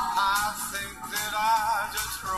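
A man singing a country song with accompaniment, holding long notes with vibrato.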